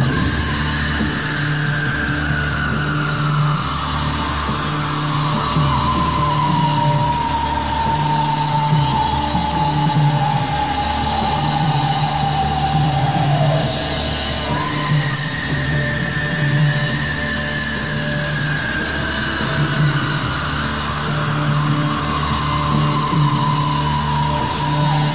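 Live rock band playing a slow instrumental passage. A bass pulses in a slow repeating figure under a long, high sliding tone that falls gradually in pitch, then starts high again about halfway through and falls once more.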